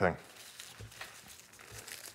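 Clear plastic wrap on a rolled leather hide crinkling faintly as hands handle and pick at it to open it.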